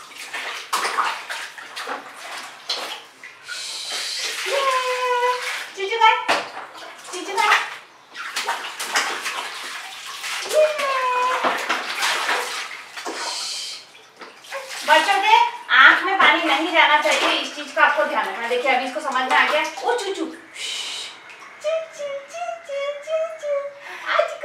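Water poured from a plastic mug over a toddler's head and splashing in a plastic baby bathtub, in a few separate pours, mixed with a woman's and a toddler's voices.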